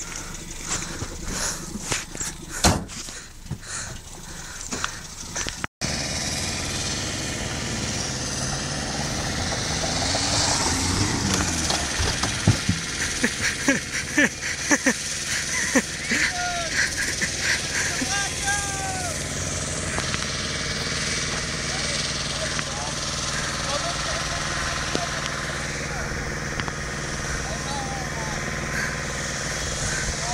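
Renault Express van driving on a dirt track: the engine runs steadily under a constant rushing gravel noise. Sharp knocks and clatter come in the first few seconds and again around the middle.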